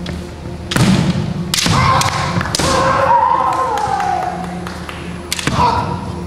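Kendo fencers' bamboo shinai strikes and stamping feet on a wooden floor, several sharp cracks and thuds, with a long drawn-out kiai shout that slowly falls in pitch in the middle and a shorter shout near the end.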